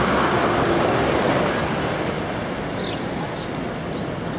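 City road traffic: the noise of vehicles going by on the street, loudest in the first second or two and then easing off.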